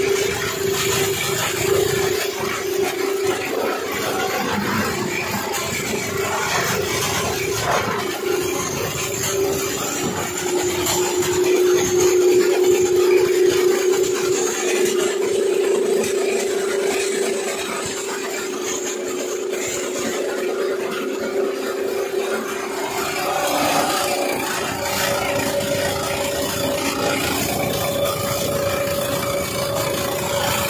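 Big-article plastic scrap grinder running and grinding plastic scrap: a steady machine hum under a rough, uneven crunching noise. A second, higher tone joins about two-thirds of the way through.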